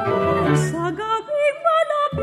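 Chamber ensemble playing a modern arrangement of a kundiman: a wavering, vibrato melody line over low held accompaniment that drops out about a second in, leaving short separate notes, with the violin joining in plucked notes.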